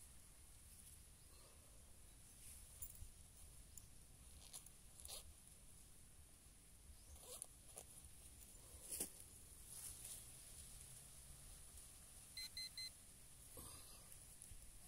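Near silence with faint scattered rustles and clicks of handling in soil, one sharper click about nine seconds in. Near the end, a metal detector gives three short high electronic beeps in quick succession.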